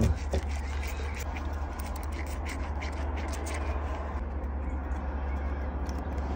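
Faint, irregular light clicks and rubbing as metal tweezers and rubber-gloved fingers handle a small model-train wheel bogie, over a steady low hum.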